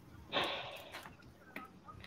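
A short breathy laugh, a snort of air about a third of a second in that fades away over about half a second.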